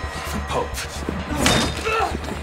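Two men fighting hand to hand: a heavy slam about one and a half seconds in, with short grunts, over a low steady music drone.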